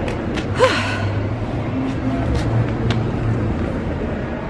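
A woman's short breathy gasp about half a second in, its pitch falling, over a steady low background hum.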